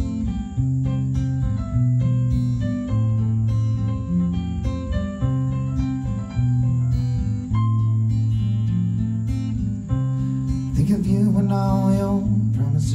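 Live band music in an instrumental passage: an acoustic guitar picked over held low bass notes that change about once a second. A voice comes in singing near the end.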